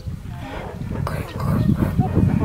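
Woolly Mangalica pigs grunting low and rough, the grunts growing louder about a second in.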